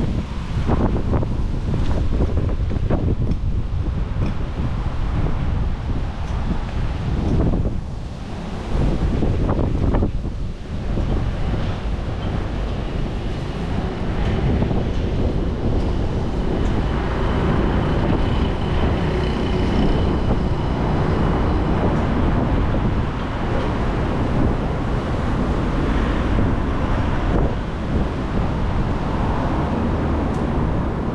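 City street ambience: road traffic passing along a busy road, with wind buffeting the microphone.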